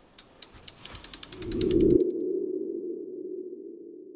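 Logo-animation sound effect: a run of clicks that speeds up, under a rising swell that peaks about two seconds in. It gives way to a low sustained tone that slowly fades.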